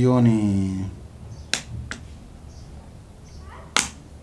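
A short falling vocal sound, then two sharp clicks, one about a second and a half in and one near the end, in a small room.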